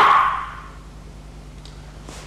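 A sharp shouted kiai from a sword swing trails off in the first moment. After it there is only a steady low hum.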